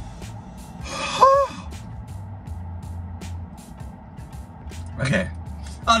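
A man gasps and groans in discomfort from brain freeze brought on by a cold slushy drink. There is a breathy gasp with a short rising voiced tone about a second in, and a shorter vocal sound near the end, over background music.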